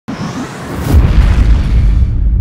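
Logo-intro sound effect: a rising noisy swell that lands about a second in on a deep boom, its low rumble carrying on.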